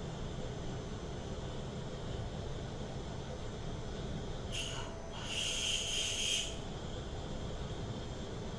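CNC milling machine drilling into an aluminium block with a long twist drill: the spindle and machine run with a steady hum, and for about two seconds in the middle the drill cutting gives off a high-pitched squeal.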